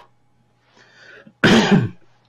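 A man clears his throat once with a short, voiced cough about one and a half seconds in, after a faint breath.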